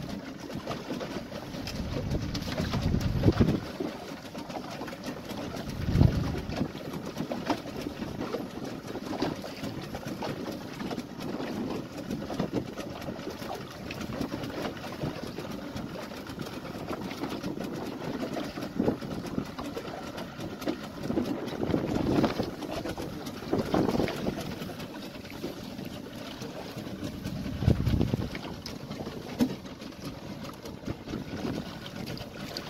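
Wind and sea noise aboard a small open fibreglass boat, with low thumps every few seconds from gusts on the microphone or water slapping the hull.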